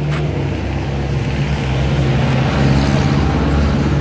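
A motor vehicle's engine running low and steady as it passes close by on the road, growing louder to a peak about three seconds in.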